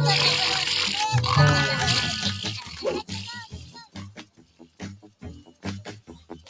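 Cartoon soundtrack music that gives way after about two seconds to a cartoon bear snoring in his sleep, in an even, repeating rhythm, with a few short chirps over it.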